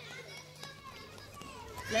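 Young children playing together, their high voices faint and calling in the background.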